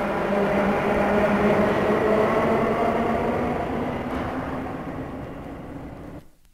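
Subway train running noise closing out the track: a steady rumble with several held tones, fading gradually and stopping just after six seconds.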